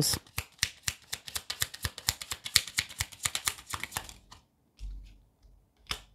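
Tarot cards being shuffled by hand: a rapid run of crisp card clicks, about ten a second, that stops about four seconds in, followed by a soft low thump.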